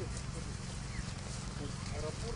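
Indistinct, distant voices of several people talking over a steady low rumble.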